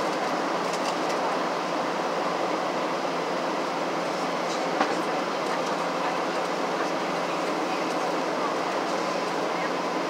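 Steady cabin noise inside a Boeing 737-700 airliner on descent: the drone of its CFM56-7B engines and air rushing past the fuselage. One short sharp click about halfway through.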